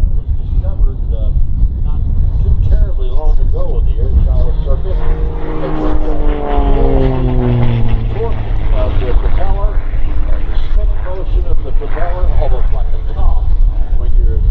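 Propeller engine of an Extra 330SC aerobatic plane droning overhead, its pitch falling steadily from about five to eight seconds in as it passes. Heavy wind rumble on the microphone and indistinct voices run throughout.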